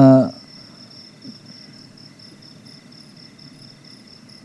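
Crickets chirping: a steady high, evenly pulsing chirp with a fainter, higher chirp repeating about twice a second, heard between a man's words.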